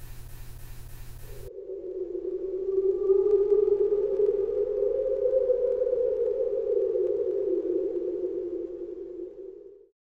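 Faint room tone for about a second and a half, then a sustained synthesized drone that swells in over the next second or two, holds steady and fades out near the end.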